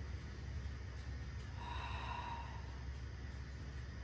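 A soft, breathy exhale about halfway through, over a steady low hum.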